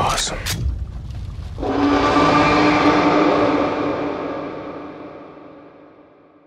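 Cinematic trailer sound effect: a low rumble and two sharp hits fade out, then about a second and a half in a deep gong-like hit comes in loud and rings, slowly dying away over about four seconds.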